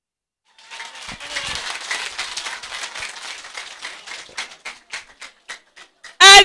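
Audience applauding, starting about half a second in. The clapping thins out into a few scattered claps near the end.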